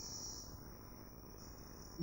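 Faint room tone in a pause between speech, carrying a steady high-pitched whine or trill.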